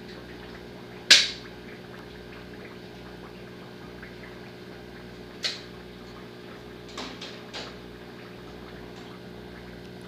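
Steady hum of a turtle-tank water pump, with one sharp click about a second in and a few fainter clicks later on.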